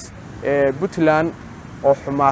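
Only speech: a man talking in short phrases with brief pauses.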